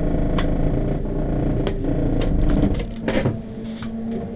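Race car engine idling, with a few sharp clicks; the low rumble stops about three seconds in, leaving a quieter steady hum.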